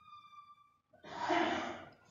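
A person's breath or sigh into a close microphone, a noisy exhale lasting about a second in the second half, preceded by a faint steady high tone.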